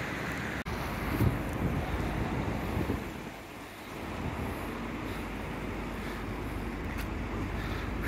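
Steady rush of wind on the microphone over outdoor background noise, with a brief dropout just over half a second in.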